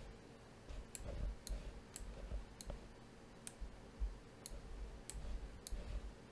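Faint, single computer mouse clicks, about eight spread unevenly over a few seconds, over a low room rumble.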